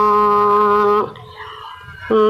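A woman's voice singing a Tày phong sư folk song, holding one long steady note that ends about halfway through, followed by a short quieter breath pause before the next phrase.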